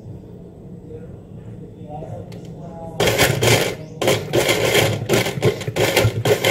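Hanabishi electric blender switched on about halfway through, chopping kiwi slices with water in its glass jar. It starts abruptly and runs loudly in stretches with brief stops, the first blend of the fruit.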